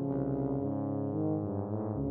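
Two tubas playing sustained low notes together, their tones overlapping, with a change of notes just after the start and again near the end.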